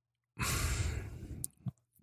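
A man's long breath into a close microphone, a sigh-like rush lasting about a second that fades away, followed by a couple of small mouth clicks.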